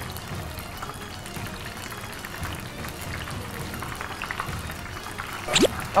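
Battered shrimp deep-frying in hot oil in a wok: a steady sizzle with fine crackles, under background music. A short vocal exclamation comes near the end.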